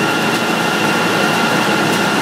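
Feed-plant processing machinery running steadily, a continuous mechanical din with a constant high whine held over it.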